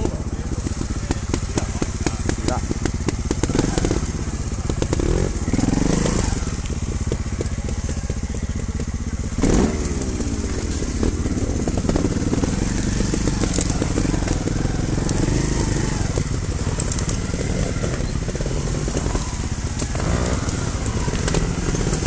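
Trials motorcycle engines idling with a fast, even ticking beat, with a few short throttle blips.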